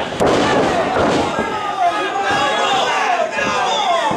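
A wrestler's body slamming onto the ring canvas with a sharp thud just after the start, followed by a small crowd shouting and cheering in reaction.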